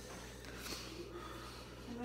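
Quiet room with a faint breath through the nose about two-thirds of a second in, as she steels herself before tasting.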